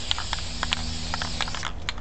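Aerosol spray-paint can spraying in a steady hiss for about a second and a half, then stopping, with a few short spits and clicks from the nozzle as it sputters paint onto the paper.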